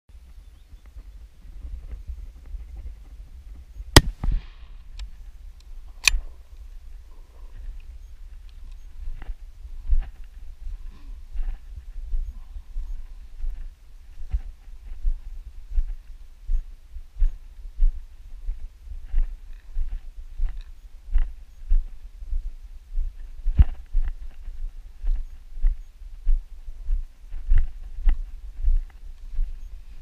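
A single .300 Winchester Magnum rifle shot about four seconds in, the loudest sound, with a short echo after it, then a second, weaker sharp sound two seconds later. From about nine seconds in come steady footsteps through grass, about one and a half a second, over a constant low rumble.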